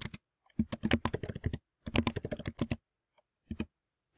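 Typing on a computer keyboard: two quick runs of keystrokes with a short break between them, then a few single key presses near the end.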